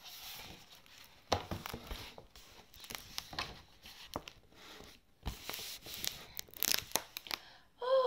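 Paper rustling and crinkling from a picture book being handled and lowered, broken by a few sharp knocks, including a low thud about five seconds in.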